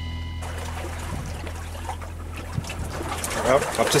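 Water washing along a small yacht's hull with wind noise, under a low sustained music note that fades out. A man starts talking near the end.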